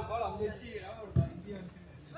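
Male voices calling out during a football game, with one sharp, loud thump of a football being kicked about a second in.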